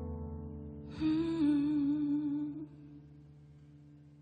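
Closing bars of a slow ballad on electric piano. A sustained chord plays, and about a second in a woman's voice holds one long note with vibrato for nearly two seconds. After the voice stops, the chord rings on and fades.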